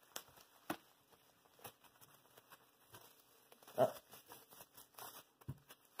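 Clear plastic bag crinkling and rustling in short, scattered bursts as it is handled and pulled open.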